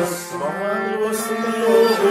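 Live Kashmiri Sufi music: a man's voice singing over a sustained harmonium drone, with a bowed sarangi, a plucked rabab and a struck pot drum accompanying. The melody wavers above a steady low tone, with short crisp accents about a second in.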